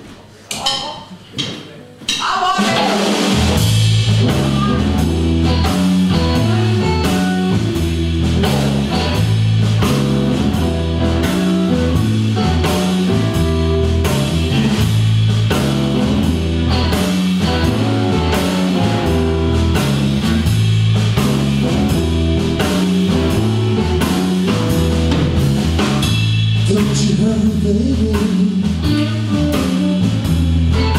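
A live blues band playing electric guitar, electric bass and drum kit. A few separate strokes open it, then the full band comes in about two seconds in and plays on steadily with a repeating bass line under the drums and guitar.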